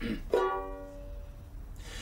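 A throat clearing, then a single chord strummed on a banjolele that rings on and fades away before the song begins.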